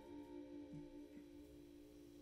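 The last chord of a jazz quartet, electric guitar and keyboard, ringing out faintly as steady held notes and slowly dying away at the end of a tune.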